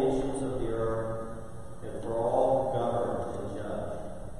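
Congregation reciting a prayer response together in unison, in two phrases.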